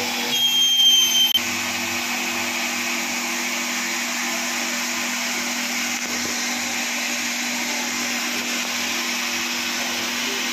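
An RO water plant's electric pump running with a steady hum and hiss. Near the start there is a brief, high-pitched whistle lasting about a second.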